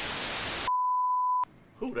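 Television static hiss for most of a second, then one steady test-tone beep of under a second that cuts off abruptly. A man's voice starts right at the end.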